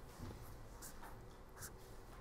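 Pen scratching on paper while drawing a diagram: a few faint, short strokes.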